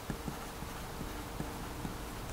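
A pen writing numbers on paper: faint, irregular little taps and scratches as each digit is written.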